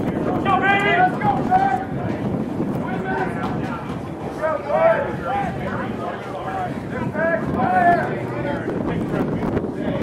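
Shouting voices from the rugby pack as a scrum forms and engages, in short raised calls about a second in, around five seconds and near eight seconds. Wind buffets the microphone throughout.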